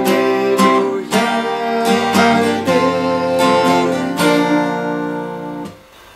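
Steel-string acoustic guitar, capoed at the third fret, strummed in a slow three-beat rhythm with plain downstrokes on the beats. The chords ring on and the playing stops just before the end.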